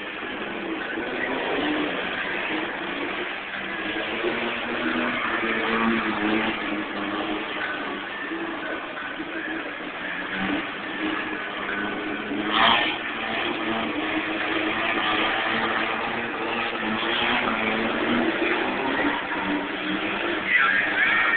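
A car engine revving hard, its pitch rising and falling as the car is spun in circles on asphalt, with one brief sharp sweep about halfway through.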